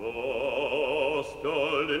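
A classically trained operatic voice enters singing sustained notes with a wide, even vibrato, breaking briefly about a second and a half in before carrying on.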